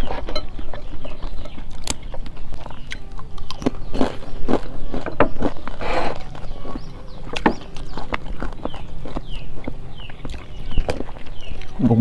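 Close-miked eating: chewing and crunching of crisp fried crackers, heard as irregular crackly bites and mouth clicks.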